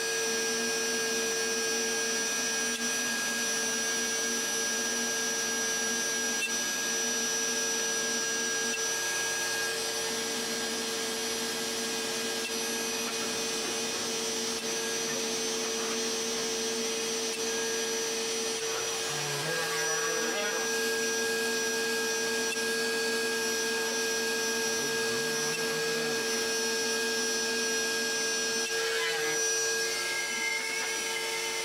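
DeWalt router on an X-Carve CNC machine running steadily with a high whine as it mills a walnut tray blank, together with the even rush of the dust-collection vacuum pulling through the dust hood. There are brief shifts in pitch about two-thirds of the way through and again near the end.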